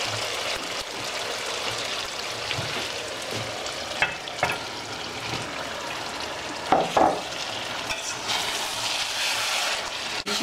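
Biryani masala frying and sizzling steadily in hot oil in a steel pot. There are a few short, sharper sounds about four, four and a half, and seven seconds in as raw chicken pieces are added to the pot.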